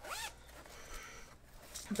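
The zipper of a small fabric pouch being pulled open, quietly.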